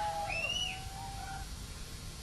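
Quiet bird-like calls: a few short arching whistled notes, one higher one just under half a second in, over a low hum.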